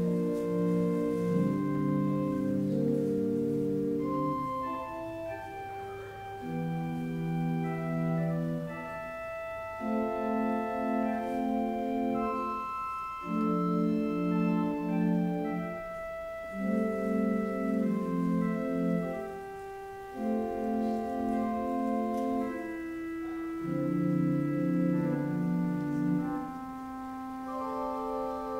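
Organ playing slow, held chords in short phrases with brief breaks between them, a higher line of sustained notes moving above.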